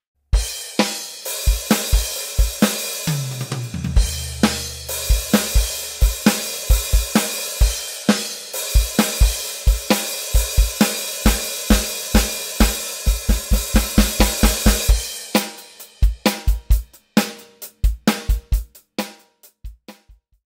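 An electronic drum kit plays a driving rock beat: kick drum, snare and a steady wash of crash and hi-hat cymbals. About three seconds in, a fill runs down three toms from highest to lowest. The last few seconds are sparser single hits.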